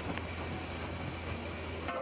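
Steady low rumble and hiss of outdoor background noise. Just before the end, a steady pitched tone of several notes sets in.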